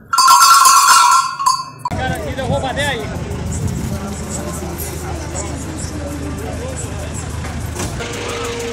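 A brief, loud burst of bright music for about two seconds, cut off abruptly. Then outdoor livestock-pen ambience: a steady low rumble with distant voices.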